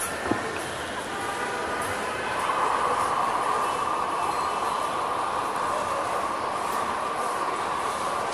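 Busy terminal-hall noise: a steady rumble with voices in the crowd, and a steady hum that joins about two seconds in and holds. A single short click comes just after the start.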